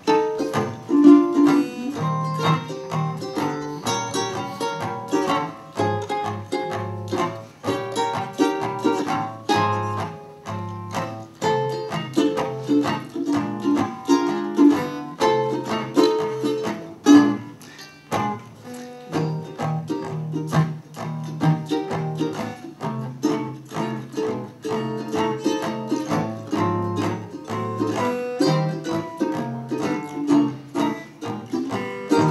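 Ukulele and acoustic guitar playing an instrumental break. The ukulele picks a quick lead line of single notes over the guitar's chords and bass.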